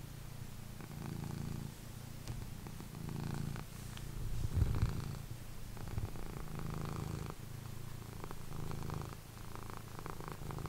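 Domestic cat purring steadily while being stroked on the head, the purr swelling and easing with each breath about once a second, a little louder near the middle.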